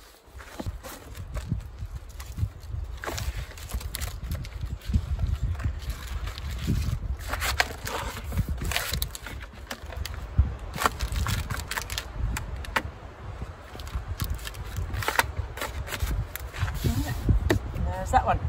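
Light rustling and tapping as a cut-to-fit window covering is handled and pressed into an SUV's rear door window frame, with scattered short clicks over a steady low rumble.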